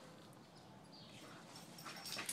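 Near silence, with faint sounds of two boxer dogs playing on the grass, a little louder near the end.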